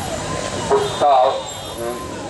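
A man's voice speaking through a microphone and public-address loudspeaker, in short phrases with a brief pause.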